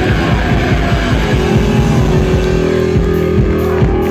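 Live punk rock band playing loud: distorted electric guitar, bass and drums, with one note held steady from about a second in.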